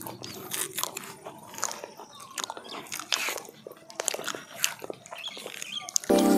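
Two people eating bananas fast: irregular wet mouth clicks and chewing, with the soft tearing of banana peels being stripped.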